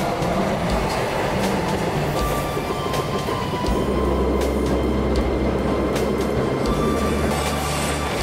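Freight train hauled by an electric locomotive running past on the rails, a steady rumble of wheels and running gear. The low rumble is heaviest from about 4 to 7 seconds in.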